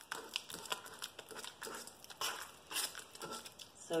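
Ripe bananas and peanut butter being mashed and stirred in a stainless steel bowl: irregular soft squishing strokes with the utensil scraping the metal.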